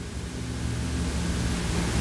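A pause between spoken phrases filled by steady recording hiss, with a faint low hum underneath.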